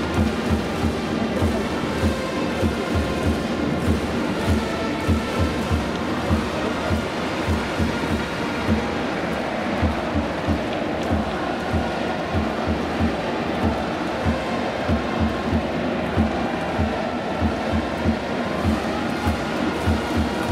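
Japanese pro baseball cheering section playing the batter's fight song: trumpets over a steady drum beat of about two to three thumps a second, with a mass of fans chanting and cheering along.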